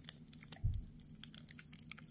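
Faint clicks and light crinkling of hands handling a sticker and its paper backing, with one soft low thump a little over half a second in.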